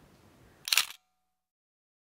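Smartphone camera shutter click as a selfie is taken, one short sharp snap a little over half a second in.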